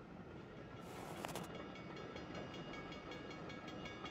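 Faint rumble of a train on the tracks, with a brief hiss about a second in. Faint, steady high ringing tones join it from about a second and a half in.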